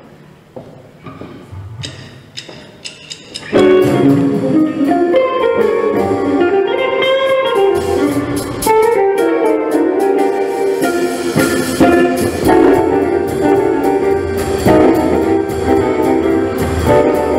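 A jazz guitar ensemble, several guitarists playing a swing standard together. It opens with a few quiet, scattered notes, then about three and a half seconds in the whole group comes in loud together.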